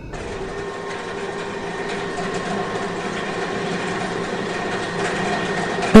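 Steady running noise of heavy tunnelling machinery, with a few faint steady hums over it.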